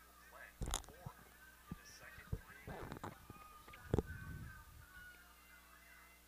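Faint, distant shouting and chatter from players and spectators, with a couple of dull thumps about a second in and again near four seconds.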